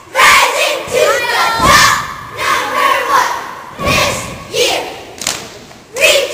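A squad of girls shouting a cheer in unison in a rhythmic chant, with two thumps between the shouts.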